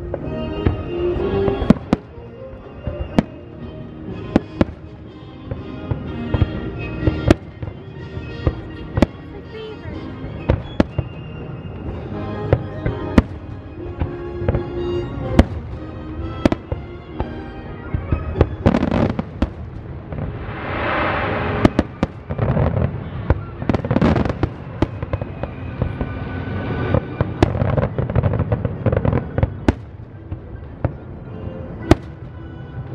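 Aerial fireworks shells bursting in quick succession, with sharp reports several times a second, over music playing steadily alongside.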